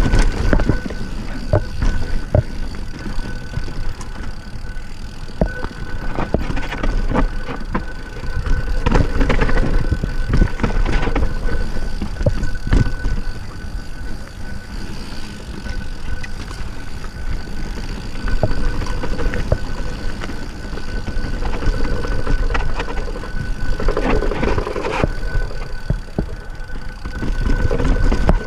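Yeti SB6 mountain bike riding over a rocky dirt trail, heard from an on-bike camera: wind rumbling on the microphone, with frequent clicks, knocks and rattles as the tyres and frame hit rocks and roots. A faint steady thin tone runs under it all.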